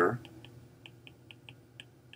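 Stylus tip tapping and clicking on an iPad Pro's glass screen as bonds and letters are drawn: a quick, irregular run of light clicks, about four a second.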